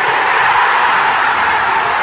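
A large indoor crowd cheering and shouting, one loud continuous roar that cuts off abruptly.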